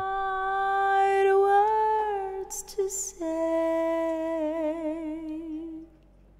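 A solo singing voice played back from the session's vocal track with a stereo reverb added through an effects send. It holds one long note, then a lower long note with vibrato, and stops just before the end.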